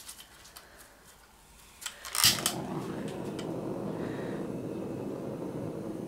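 Handheld gas torch clicking as it is lit, about two seconds in, then the steady hiss of its flame.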